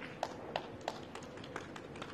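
Footsteps of a player walking briskly around a pool table, sharp clicks about three a second with lighter ones between, over faint hall noise.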